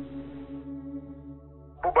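Background music: a single held note with a processed, echoing sound, fading out. A man's voice starts speaking near the end.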